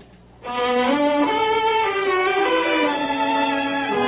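Orchestral bridge music from a radio drama, entering about half a second in with slow, held chords that change every second or so: a cue that marks a change of scene.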